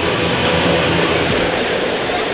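Steady background hubbub of an ice hockey arena crowd, with no single sound standing out.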